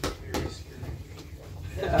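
Two short knocks about a third of a second apart and a low rumble of bodies shifting, then a boy laughing near the end.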